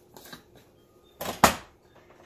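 Glass mason jar handled on a kitchen counter: a few light clicks, then a short scrape of its lid coming off, ending in a sharp knock as the lid is set down about a second and a half in.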